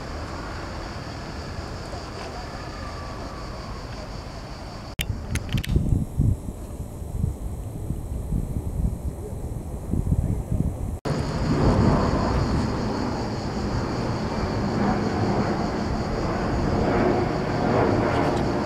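Outdoor ambience of steady distant traffic hum, with wind gusting on the microphone in low rumbles through the middle stretch. The sound changes abruptly twice, about five and eleven seconds in, where shots are cut together.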